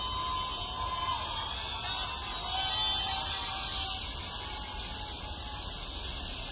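Live festival crowd noise heard from the stage, a steady mass of sound with a few long, wavering held tones over it.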